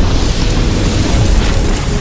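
Cinematic explosion-and-rumble sound effect for an animated logo reveal: a loud, dense rush of noise carrying on from a sudden start, easing off slightly near the end.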